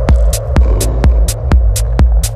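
Techno track: a four-on-the-floor kick drum at about two beats a second, with hi-hats hitting on the offbeats between the kicks, over a droning hum and deep sub-bass.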